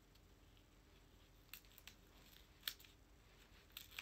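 Near silence with a few faint, sharp clicks and light rustles as a small plastic phone-strap accessory and its packaging are handled, the clearest click about two and a half seconds in.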